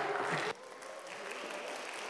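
A few scattered light claps and rustling from a congregation in a large, reverberant church.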